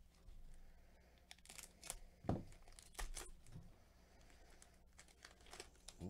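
Faint crinkling, tearing and light clicks of trading cards and their pack wrappers being handled, with a couple of soft knocks near the middle.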